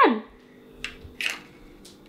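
Plastic game spinner of a Chutes and Ladders board game flicked and spinning: three short, soft scraping strokes under a faint steady hum.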